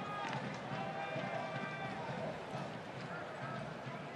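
Faint baseball TV broadcast audio: quiet voices over a steady ballpark background.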